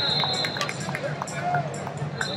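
The ambience of a busy wrestling arena: overlapping voices and chatter from the crowd and surrounding mats, with scattered short squeaks and knocks. A steady high tone sounds through the first half second.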